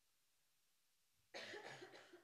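Near silence, then about a second and a half in, a man coughs into a handheld microphone.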